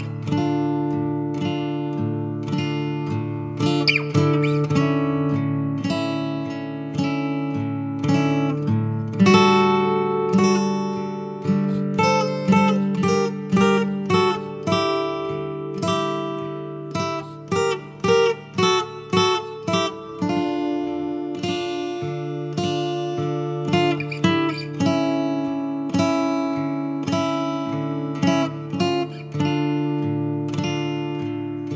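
Recorded rock music built on strummed acoustic guitar chords, with no singing. In the middle the strums turn short and clipped before settling back into steady chords.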